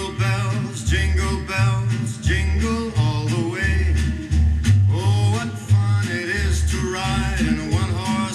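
A radio broadcast of a song, with a singing voice over a recurring bass line, played through a portable stereo's loudspeaker.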